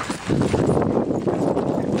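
Horse hooves clopping on a dirt trail while the horse moves at a bumpy, quickened pace, the knocks coming thick and uneven.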